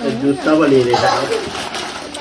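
A person's low voice holding one drawn-out, wavering vocal sound for about a second and a half, without clear words.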